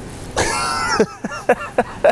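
A person laughing: one drawn-out, breathy burst, then several short laughs.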